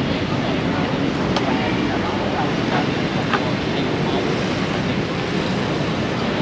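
Steady, even rush of city traffic noise, mostly motorbikes and cars on the surrounding streets.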